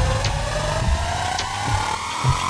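Suspenseful electronic film-score cue: one synth tone rises slowly and steadily in pitch over a low pulsing bass, with a few sparse high ticks.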